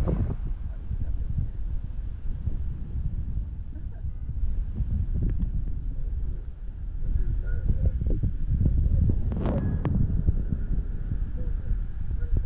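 Wind buffeting a phone microphone over the low rumble of a car moving through traffic, swelling and easing in gusts. A brief higher-pitched sound cuts through about nine and a half seconds in.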